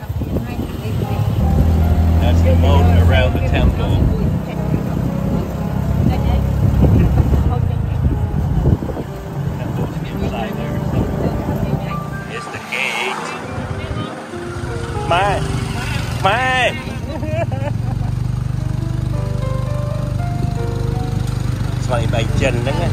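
Steady hum of a tuk-tuk's motorcycle engine as it drives along, coming in about two-thirds of the way through; before that, a mix of voices and music.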